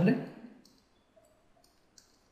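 The tail of a spoken word, then near silence with a few faint clicks and ticks from a stylus writing on a pen tablet.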